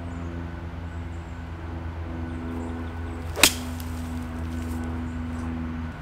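Golf club striking the ball once, a single sharp click about three and a half seconds in: a low punch-out shot played from pine straw under trees. A low steady hum runs underneath.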